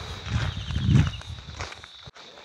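Footsteps on a dry, sandy dirt path with a low rumble underneath that swells about a second in and fades before the end. A faint steady high-pitched tone runs underneath.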